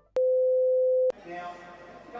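A test-card tone: one steady, mid-pitched electronic beep held for about a second, switched on and off with a click. It cuts to a busy background of voices.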